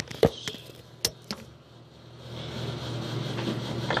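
A few knocks from the phone being handled, then a bathroom sink tap is turned on and water runs steadily into the basin from about halfway through.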